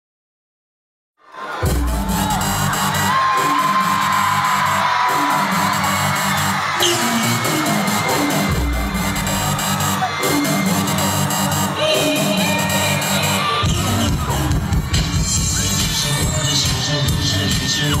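Live pop song intro played through a concert sound system, starting suddenly about a second in after silence, with an audience cheering over it. A heavier bass beat comes in about three-quarters of the way through, and a male voice starts singing at the very end.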